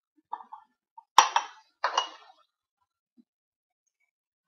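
Raw potato cubes dropping through a plastic canning funnel into glass pint jars, making a few short clinks against the glass. The sharpest clink comes a little over a second in, with another about a second later.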